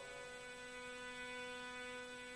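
A faint steady hum: one unchanging buzzy tone with many overtones and no breaks.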